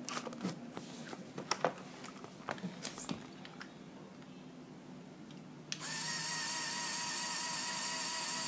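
A Lego Technic electric motor starts suddenly about six seconds in and runs with a steady whine, driving the garbage truck's crushing mechanism through linear actuators. Before it, a few light plastic clicks and knocks from the model being handled.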